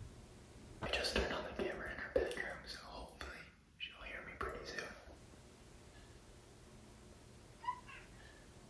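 A man whispering for about four seconds, then a cat's single short meow near the end.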